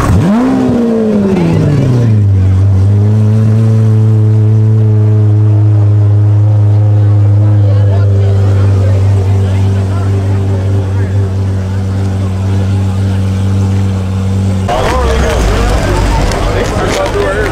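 Lamborghini Aventador's V12 engine revving once, the pitch rising and falling back over about two seconds, then settling into a steady, loud idle. The idle cuts off suddenly near the end.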